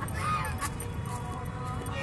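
White domestic geese honking, one short call about a quarter second in, over a steady low rumble.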